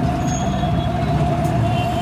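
Busy street traffic: a steady, fairly loud rumble of vehicle engines with one continuous whining tone running through it.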